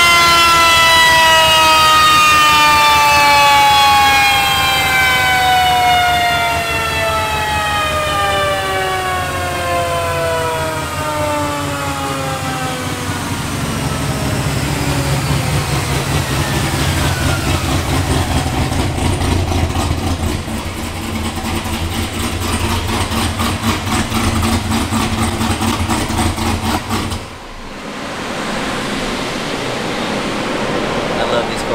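C7 Corvette ZR1 on a chassis dyno winding down after a full pull: a high whine falls steadily in pitch over about twelve seconds as the car and rollers slow. Then the supercharged 6.2 L LT5 V8 idles with a steady low rumble.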